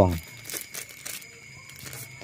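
Plastic grafting wrap crinkling and rustling as it is handled, a quick cluster of crackles about half a second to a second in and one more near the end.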